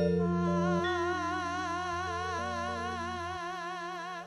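Campursari band music: one long held high note with an even vibrato over sustained keyboard notes that step between pitches, slowly fading.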